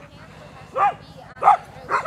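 Alaskan husky sled dogs in harness giving three short, high barks, the first about a second in and two more near the end, the excited noise of a team waiting to run.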